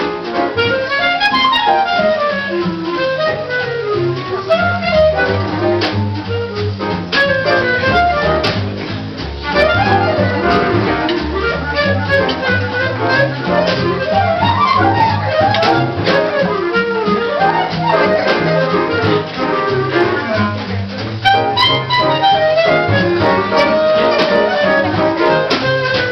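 Live small-group jazz: a clarinet plays a running melodic solo line over an upright double bass walking in steady stepped notes.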